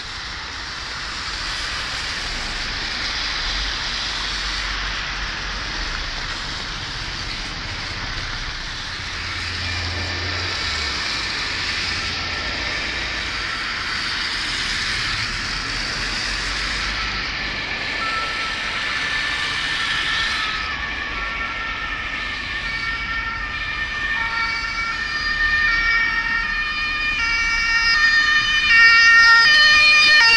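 Steady rushing noise, then from about two-thirds of the way in an emergency vehicle's two-tone siren alternating between two pitches, growing louder as it approaches and loudest near the end.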